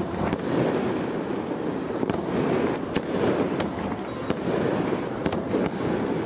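A fireworks display: dense, continuous crackling with sharp cracks scattered irregularly through it, several of them close together near the end.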